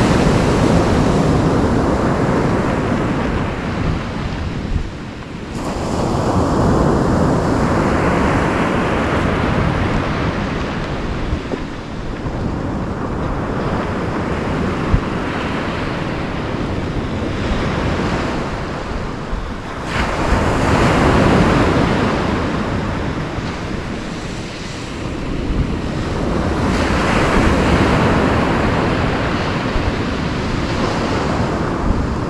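Surf breaking on a shingle beach: a steady wash of waves that swells and eases every several seconds, with wind on the microphone. A single sharp click about halfway through.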